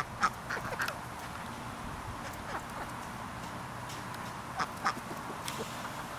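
Chicks peeping in short, scattered calls, a few near the start and a few more near the end, over a low steady background hiss.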